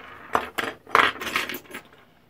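Copper pipes and scrap metal pieces clinking against each other and the wooden workbench as they are handled and set down: a run of sharp metallic clinks that stops about two thirds of the way through.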